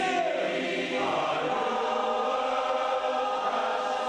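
Large men's chorus singing sustained chords, moving to a new chord about a second in and holding it.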